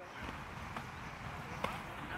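Faint outdoor background noise with two faint knocks under a second apart, from a softball being caught in leather gloves during a game of catch.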